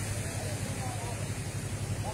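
Steady low hum of distant road traffic under a faint, even background noise.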